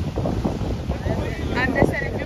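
Strong wind buffeting the microphone in gusts, with waves breaking on the rock ledge beneath it. A short voice sounds briefly near the end.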